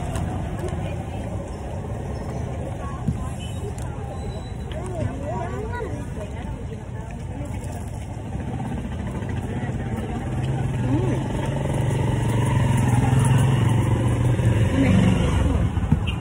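Low rumble of a passing motor vehicle that grows louder over the last third and drops away near the end, with indistinct voices in the background.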